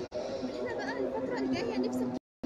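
Indistinct background chatter of several people's voices, with no single clear speaker.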